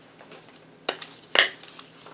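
Desktop stapler pressed down on a stack of six paper strips: two sharp clacks about half a second apart, the second louder, as the staple goes all the way through.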